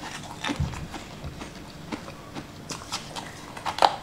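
Close-miked eating sounds of a crunchy, sugar-crusted purple sweet: scattered sharp crunches and mouth clicks, the loudest just before the end.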